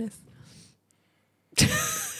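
A pause of dead silence, then a sudden loud, breathy burst of laughter about a second and a half in.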